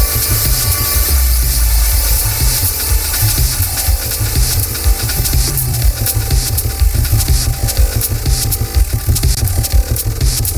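Electronic avant-garde techno/IDM music from a live set: a dense, pulsing deep bass with sharp clicking percussion over it.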